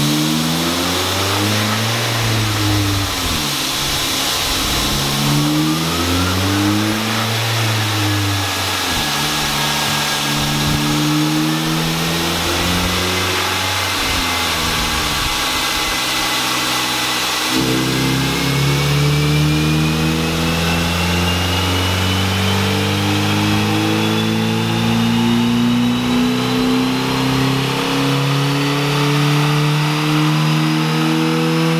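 Ford Focus four-cylinder engine on a chassis dyno, revving up and dropping back in pitch several times through the first half, as through the lower gears. A little past halfway it steps down and starts one long, steady climb in pitch to the end: a dyno power run, with a thin whine rising alongside.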